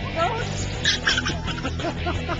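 A goat bleating briefly about a second in, over people's voices.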